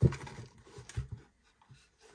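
A few light knocks and scrapes from a display case and its drawer being handled, in the first second or so.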